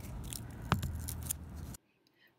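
Scissors snipping through a compressed cellulose sponge to cut out a star shape: a few short snips.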